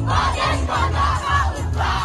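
Crowd of young people shouting and singing along over loud dance music with a pulsing bass beat.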